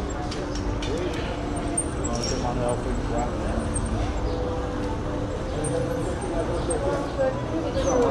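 Indistinct voices of passers-by in a busy pedestrian street, over the steady low rumble of a bicycle rolling across stone paving.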